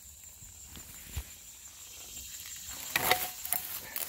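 Dry brush and twigs rustling and crackling as a rusty metal cylinder with a coil spring attached is moved out of the undergrowth, the handling noises loudest about three seconds in, after a mostly quiet start with one soft low thump.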